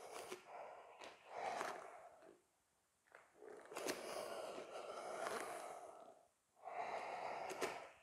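Faint, heavy breathing of a man exerting himself through repeated hands-down floating hops, several long breaths with short pauses between them.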